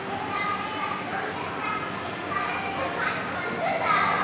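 Background voices of children playing and calling out, several overlapping voices with no clear words.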